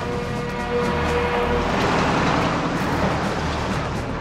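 A convoy of heavy Iveco trucks driving past, a steady rumble of engines and tyres that grows loudest around the middle, with film-score music underneath.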